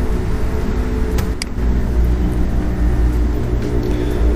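A steady low rumble, like a motor vehicle's engine running, with a single sharp click a little over a second in.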